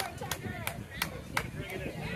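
Five sharp hand claps in an even rhythm, about three a second, over people's voices talking.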